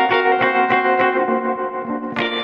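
Music: an electric guitar with reverb picking the song's opening arpeggio, evenly plucked notes about four a second, each left ringing.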